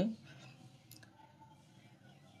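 A single small, sharp click about a second in as a hand works a wire into a DOL motor starter's terminals, against a quiet room.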